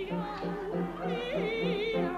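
Operatic-style singing by a woman with wide, wobbling vibrato, over an accompaniment that pulses evenly at about four beats a second, in a comic stage duet.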